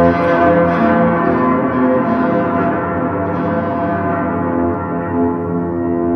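Yaybahar being played: its string vibration travels through long coiled springs into two frame drums, giving several sustained, overlapping tones that shift in pitch and ring on like bells.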